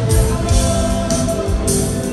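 Live rock band playing through an arena PA: electric guitar, bass and drum kit with a steady beat, in an instrumental stretch without singing.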